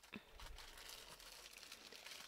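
Faint crinkling of clear plastic wrapping as a plastic-sealed tote bag is gripped and lifted out of a cardboard box.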